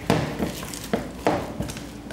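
Spatula folding flour into a thick cake batter in a glass mixing bowl: a run of about five short scrapes and soft knocks as the spatula works the mixture against the bowl.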